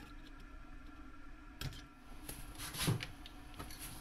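Faint light clicks and scrapes of a small screwdriver against the float tab of a Baltmotors 250 carburetor, which is being bent a little to set the float level, over a low steady hum.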